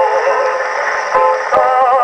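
Edison Diamond Disc record of a 1920s popular song playing acoustically on an Edison S-19 phonograph: held notes with a wavering pitch, with a new group of held notes coming in about one and a half seconds in.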